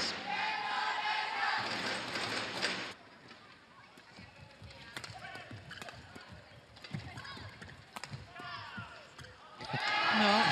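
Badminton hall sound: a loud burst of crowd noise for about the first three seconds, then a much quieter hall with a few sharp knocks of rackets hitting the shuttlecock.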